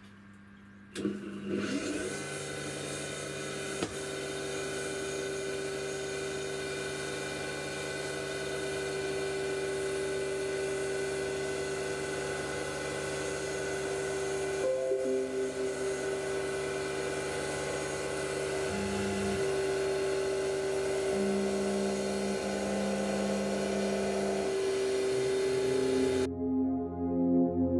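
Grizzly G8689Z (X2) CNC mini mill milling aluminium. The spindle motor spins up about a second in and settles into a steady whine. Beneath it, the axis drive tones step to new pitches several times as the cutter moves, most noticeably just before the middle and again later on.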